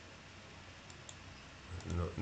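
Two faint computer mouse clicks about a second in, a fraction of a second apart, over a quiet steady room background.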